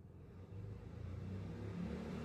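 Faint, low rumble of a motor vehicle's engine, coming up about half a second in and then holding steady.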